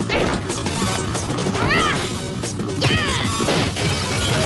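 Cartoon fight soundtrack: crashes and hits over action music, with two brief shouts.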